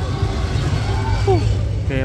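A loud, fluctuating low rumble, with a man saying 'okay' about a second in.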